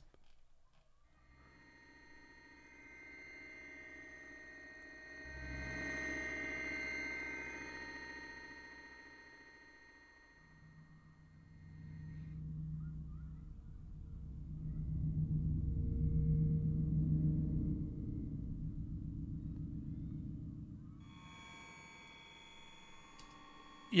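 Slow-building synthesizer drone from an Absynth 5 'abstract bells' patch: a cluster of sustained high tones swells in and fades away after about twelve seconds. A deeper droning mass then builds to its loudest around fifteen to seventeen seconds and cuts off about three seconds before the end.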